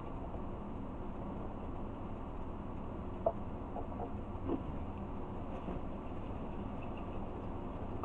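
Steady low hiss with a couple of faint short taps, from hands moving things about in a cardboard box packed with shredded paper filler.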